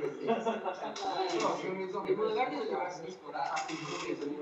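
Indistinct voices mixed with background music.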